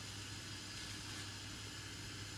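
Faint steady hiss with a low hum underneath and no distinct events: background room noise.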